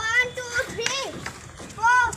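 A young child's high-pitched voice making short sliding calls, one rising and falling about a second in and another near the end, without clear words.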